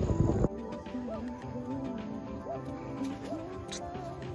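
Siberian husky vocalizing in several short rising-and-falling calls over background music. A loud rough noise fills the first half second, then cuts off.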